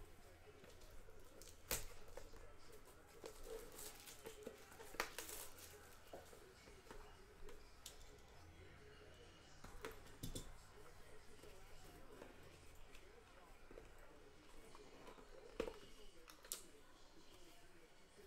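Faint handling sounds from a trading-card box being opened: soft rustling of cardboard and packaging, with a few scattered light clicks.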